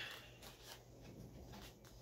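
Faint handling noise of cosplay armour pieces: soft rustling with a few light clicks and taps, over a low steady room hum.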